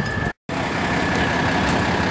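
Military truck's diesel engine running steadily, broken by a short gap of silence about a third of a second in, then running on.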